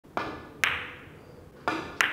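Sharp clicks of carom billiard balls being played on a three-cushion table: the cue tip striking the cue ball and balls knocking together, four clicks in two seconds, each ringing briefly.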